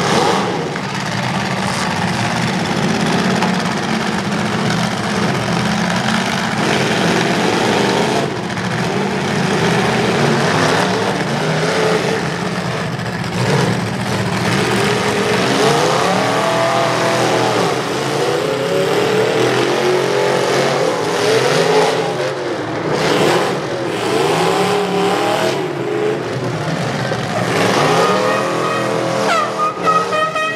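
Several demolition derby trucks' engines revving hard, the pitch swinging up and down again and again, with a few sharp metal crashes.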